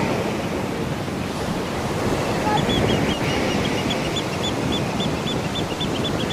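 Sea surf breaking and washing up on a beach, a steady rushing wash of water. From about halfway through, a run of short, high chirps repeats a few times a second over it.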